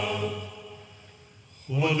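Mixed choir singing: a held chord dies away into the hall's reverberation, there is a brief pause, and the voices come in together on a new phrase near the end.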